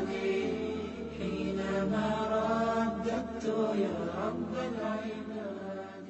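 A voice chanting a melodic line, the notes held and bending in pitch, over a steady low hum; it grows quieter near the end.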